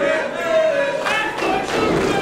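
A held voice calling out in a large hall, with a dull thud from the wrestling ring as the wrestlers grapple.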